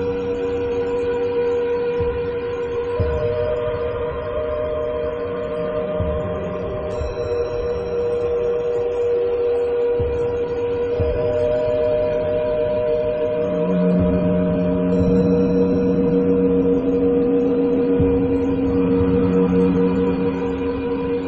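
Layered Tibetan singing bowl tones, several steady pitches ringing together and held for many seconds. A higher tone joins a few seconds in and again about halfway, and a lower tone swells in about two-thirds of the way through.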